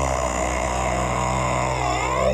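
A sustained electronic synth drone from a dance track starts abruptly and holds steady, thick with overtones, with a sweeping, phasing filter effect coming in near the end.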